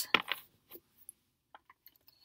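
Tarot cards being handled and shuffled: a sharp click just after the start, a few lighter clicks and clinks, then faint ticks near the end.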